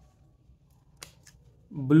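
A sharp plastic click about halfway through, followed by a couple of fainter clicks, as the cap is pulled off a blue felt-tip marker; a man's voice says "blue" near the end.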